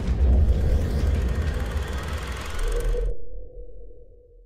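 Outro logo sound effect: a loud, deep rumbling whoosh that cuts off sharply about three seconds in, leaving a single low tone that fades away.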